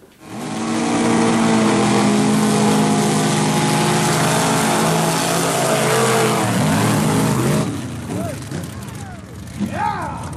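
Two off-road 4x4 trucks racing side by side through a mud bog pit, their engines revving hard and held at high rpm. The engine noise drops away about eight seconds in.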